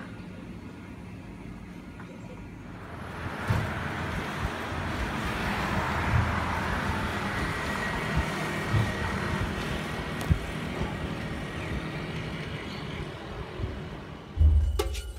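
Road traffic noise: a low hum for the first few seconds, then a rushing noise that swells about three seconds in and slowly eases off, with a few short knocks.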